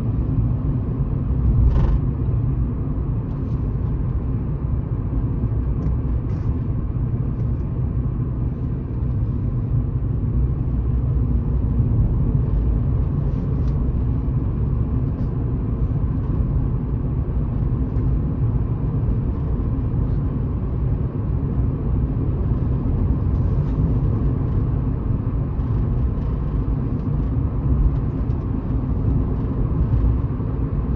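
Car interior road noise while driving: a steady low rumble of tyres and engine heard from inside the cabin. A brief light knock comes about two seconds in.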